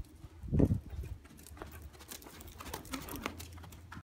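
Horse hoofbeats on the soft dirt footing of an indoor riding arena: a run of light, irregular thuds, with a louder low thump about half a second in.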